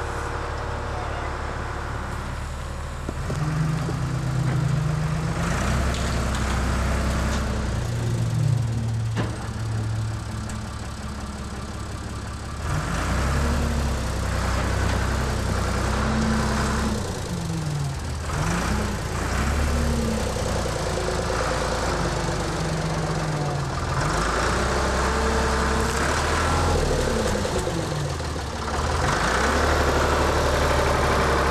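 Backhoe engine running, its pitch rising and falling again and again as the bucket digs and lifts, with occasional knocks of the bucket and dirt.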